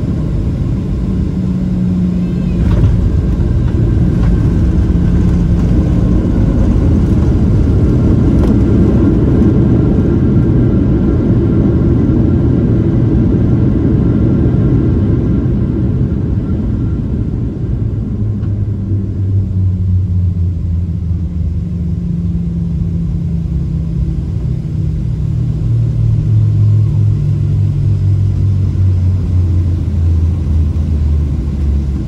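Inside the cabin of a Boeing 737-700 on its landing roll: a loud, steady rumble of the CFM56 engines and runway noise. After about 17 seconds it eases into a lower, steadier engine drone as the jet slows.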